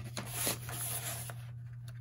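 The scoring blade of a sliding paper trimmer is drawn along a sheet of cardstock to score a fold line. It makes a dry scraping sound lasting about a second and a half.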